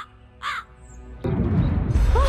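A crow cawing twice in quick succession over background music. About a second in, a sudden deep, loud swell of sound cuts in.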